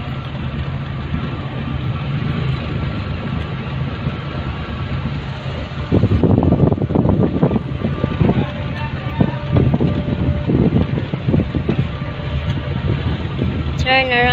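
Car being driven slowly, heard from inside the cabin: a steady low engine and road hum, with louder irregular knocks and rumbles from about six seconds in.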